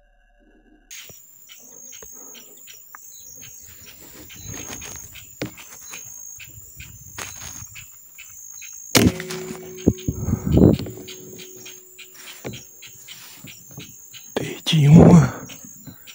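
A single sharp crack of a scoped hunting carbine firing, about nine seconds in. It sounds over steady, regularly pulsing insect chirping.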